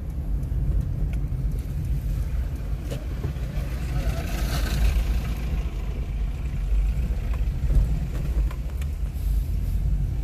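Steady low rumble of a car's engine and tyres heard from inside the moving car, with a brief swell of hiss about halfway through.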